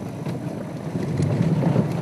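Safari game-drive vehicle's engine running steadily as it drives along a bumpy dirt track, a low rumble.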